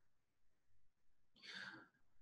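Near silence, broken by one brief, faint breath from the speaker about one and a half seconds in.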